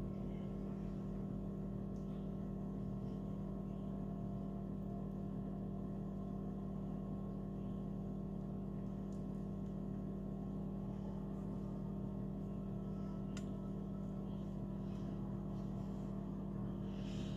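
A steady low machine hum that holds one pitch and level, with a single faint click about thirteen seconds in.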